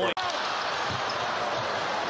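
Basketball arena crowd noise over a ball being dribbled on the hardwood court. The sound cuts out for an instant near the start.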